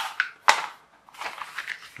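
Stiff paper sheets rustling and crinkling as they are handled and unfolded, with a sharp tap about half a second in.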